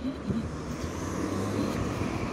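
City street traffic: a car driving along the road beside the sidewalk, a steady rumble of engine and tyres.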